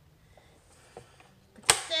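Faint rustling and light taps of a sheet of cardstock being slid and squared up on a plastic rotary paper trimmer base, then a sharp click near the end as a woman starts to speak.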